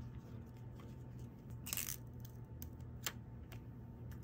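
Paper and card being handled on a table: a short rustle a little under two seconds in, a single sharp click about a second later, and a few faint ticks, over a steady low hum.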